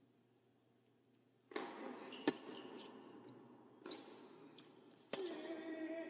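A second and a half of silence, then a tennis rally on an indoor hard court: the ball bouncing and being struck with rackets, with a sharp hit about two seconds in and further hits about four and five seconds in.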